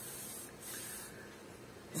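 Two faint breaths through the nose, heard as soft hisses one after the other in the first second.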